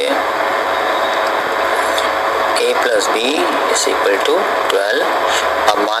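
A person's voice speaking a few words at times over a steady hiss of recording noise.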